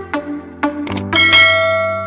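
Electronic outro music with a bright bell ding about a second in that rings out for about a second: a notification-bell sound effect.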